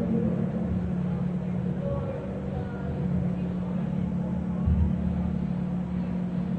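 Steady low hum over the background noise of an old sermon recording, with faint murmured voices about two seconds in.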